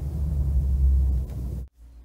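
Low, steady rumble picked up by a microphone sealed inside a helium balloon, which sounds "not too happy" in there; it cuts off abruptly near the end.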